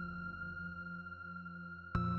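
Background score of sustained drone tones holding steady, with a single sharp hit just before the end.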